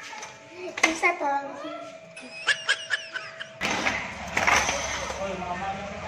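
A young child's voice talking and exclaiming, with no clear words. A faint steady hum lies under the first half, and the background turns noisier after about three and a half seconds.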